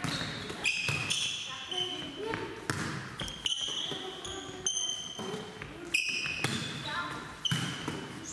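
Volleyballs being volleyed and passed by hand in a reverberant sports hall: repeated sharp knocks of hands striking the balls, high shoe squeaks on the hall floor, and girls' voices calling out now and then.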